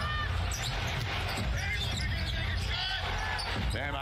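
Basketball broadcast sound: a basketball dribbling on a hardwood court, with short sneaker squeaks, over steady arena crowd noise.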